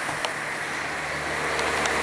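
A motor vehicle's engine running with a steady low hum that grows louder toward the end, over a steady hiss, with a few faint clicks.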